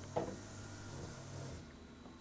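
A pause in a man's talk: faint steady low hum and hiss of the room and recording chain, with one short soft sound about a fifth of a second in.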